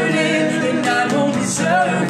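A man and a woman singing together over a strummed classical guitar.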